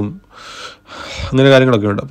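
Two breathy sounds from a person, like sharp breaths or gasps, then a voice speaking from about halfway through.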